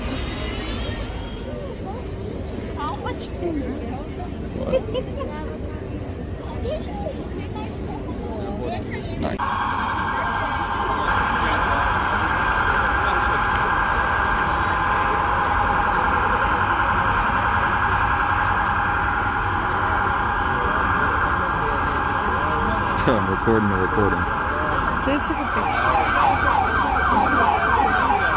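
Police vehicle siren sounding close by over crowd noise. It starts suddenly about a third of the way in and keeps warbling, and the warble speeds up near the end.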